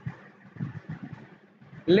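A pause in speech holding only faint low background noise and a few soft low knocks; a person's voice resumes just before the end.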